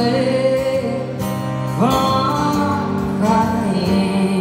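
Live acoustic guitar accompanying a woman singing a slow song, her voice holding a note and then sliding up into a new phrase about two seconds in.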